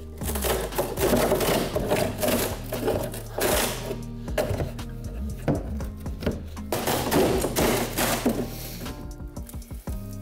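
Knotty pine wall paneling being pried off a half wall with a claw hammer: wood cracking and splitting in several bursts of a second or so, over background music.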